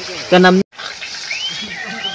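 A short spoken sound, then after an abrupt cut a steady sizzling hiss of chicken frying in a large iron wok over a wood fire.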